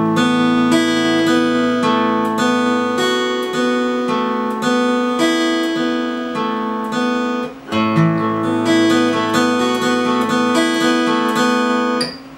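Steel-string acoustic guitar fingerpicking an arpeggio over an open A chord. It goes up the chord and back down, then up to the B string, then repeats the last four notes with the F-sharp on the high E string before returning to the open E. The open low A rings underneath, and the pattern starts over about eight seconds in.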